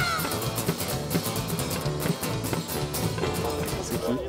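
Live band music with electric guitar and piano over a steady beat; a sung line ends just after the start and the band plays on.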